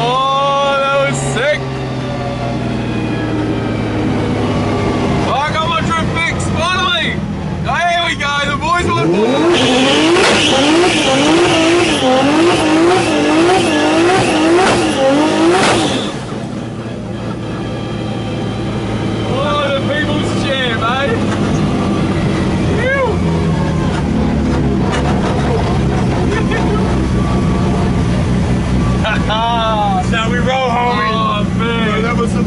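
Drift car's engine heard from inside the cabin. It revs up in a few rising sweeps, then holds high revs that rise and fall quickly, several times a second, for about six seconds along with tyre squeal. It then cuts suddenly to a steady, low running note.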